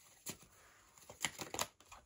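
Tarot cards being handled and drawn from the deck: faint rustling and a few sharp card snaps, several in quick succession in the second half.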